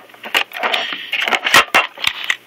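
Plastic shell of a ViewSonic G-Tablet being handled and turned over by hand: scraping and rubbing with a few sharp knocks, the loudest about one and a half seconds in.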